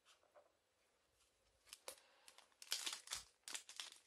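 Foil booster-pack wrapper crinkling and starting to be torn open by hand: near silence at first, then a run of sharp crackles from a little under two seconds in, growing denser and louder toward the end.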